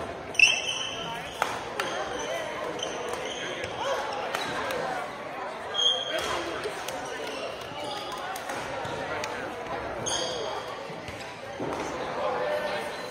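Badminton play on a hardwood gym floor: sharp racket-on-shuttlecock hits, the loudest about half a second in, and short high sneaker squeaks on the wood. Echoing chatter from players on other courts runs under it.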